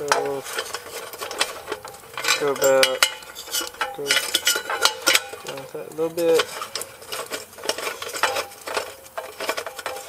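Drinking-fountain spigot being screwed by hand into a stainless steel bowl: repeated small metal clicks and scrapes as the threaded fitting is turned.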